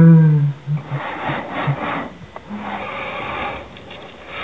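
A person's low voice for the first moment, then breathy, hissy vocal noises in short bursts and one longer stretch, made close to a laptop microphone.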